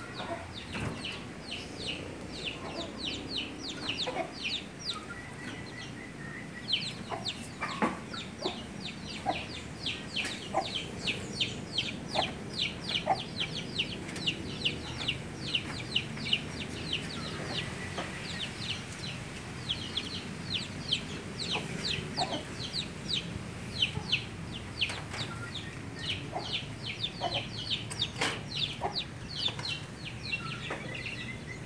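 Birds peeping continuously: quick, high calls, several a second, each falling in pitch.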